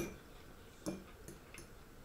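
Faint eating sounds: a few soft clicks about a second in and shortly after, in a quiet room.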